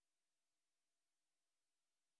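Near silence: a dead audio feed with only a faint, steady electronic hiss.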